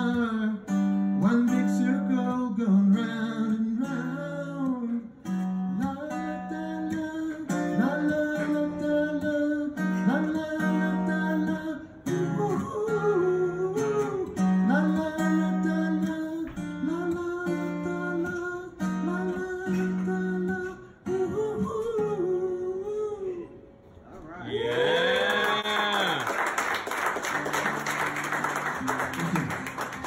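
Acoustic-electric guitar playing a picked instrumental passage that closes a song. It stops briefly and is followed by a few seconds of applause with a cheer, and then guitar notes start again near the end.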